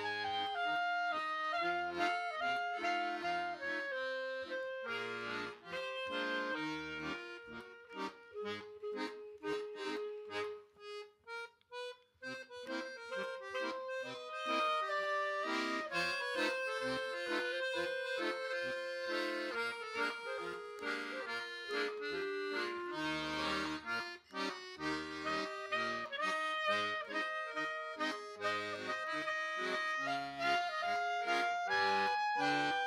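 Clarinet and piano accordion playing an instrumental break: clarinet melody over accordion chords and bass notes. About ten seconds in it drops to soft, short notes for a couple of seconds, then picks up again.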